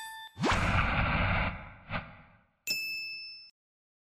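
Logo-reveal sound effects: a quick rising sweep into a loud noisy hit that fades over about a second, a light tap, then a bright bell-like ding that cuts off suddenly.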